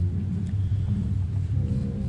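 Steady low background rumble with a faint hum, unbroken and without speech.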